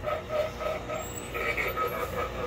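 Spirit Halloween 'Young Crouchy' clown animatronic just triggered and running: a faint sound track of short notes repeating several times a second, heard over store background noise.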